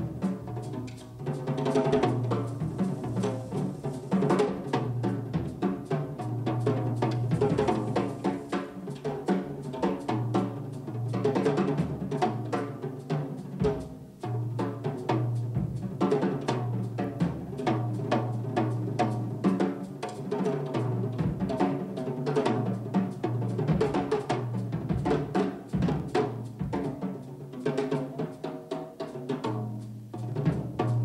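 Jazz drum kit played on its own as a solo: a dense, continuous run of strokes around the toms and bass drum, with cymbals.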